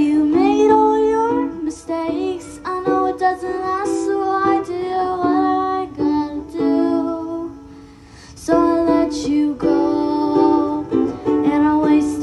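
A girl singing while strumming an acoustic ukulele, with a brief lull in the playing a little past the middle.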